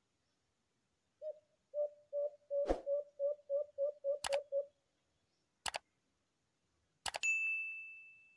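A dove giving a quick run of about a dozen short, low coos, about three a second, with sharp clicks in between. Near the end a click is followed by a bright metallic ding that rings on and fades slowly.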